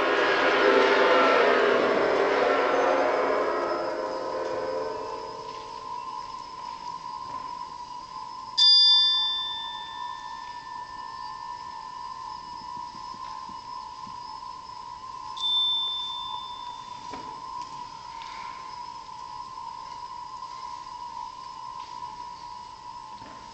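Concert band music: a loud full-band chord fades away over the first few seconds, leaving a soft sustained high note. Over it, bell-like metallic percussion strikes twice, about nine and fifteen seconds in, each ringing out and dying away.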